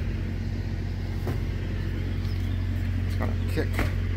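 Semi truck's diesel engine idling, a steady low drone, with a few faint clicks over it.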